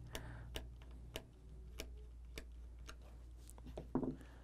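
Small screwdriver loosening a screw in a screw terminal block, faint sharp clicks about every half second as the screw is backed out to free a wire.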